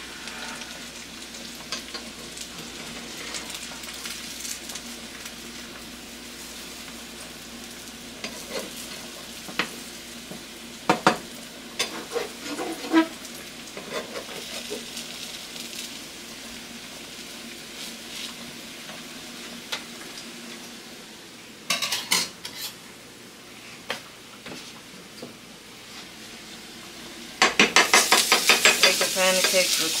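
Food sizzling in a frying pan, with occasional clicks and scrapes of a metal utensil against the pan. Near the end the utensil strikes the pan in a rapid run of loud taps, about six a second, as the food is stirred.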